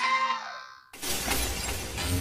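A sustained music note fades out. About halfway through, a glass-shattering sound effect crashes in, with a low rumble beneath it.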